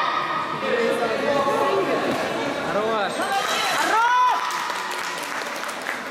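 High-pitched shouts and calls from several voices, echoing in a large sports hall over steady chatter. The sharpest yells come about three to four seconds in.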